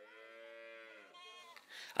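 A farm animal calling: one long, steady call lasting just over a second that sags in pitch as it ends, followed by a shorter, higher call.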